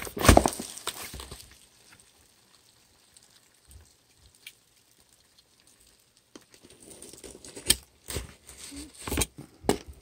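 A cardboard box handled with a burst of rustling near the start, then a utility knife cutting through its packing tape: scratchy crackling of the blade on tape and cardboard, with several sharp clicks over the last few seconds.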